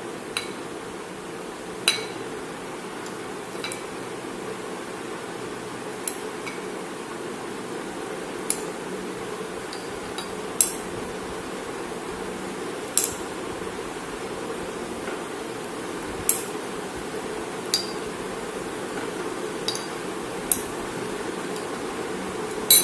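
A metal spoon clinking against a glass bowl and a ceramic jar as pomegranate arils are scooped and dropped in. It gives about a dozen sharp, separate clinks, irregularly spaced every second or two, over a steady low background noise.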